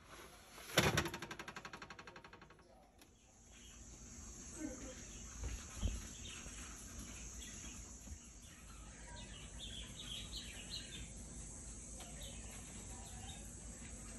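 A round pizza dish set down on a metal wire oven rack with a loud clatter about a second in, then rattling rapidly on the rack as it settles over about two seconds. After that, a steady faint hiss with scattered faint chirps.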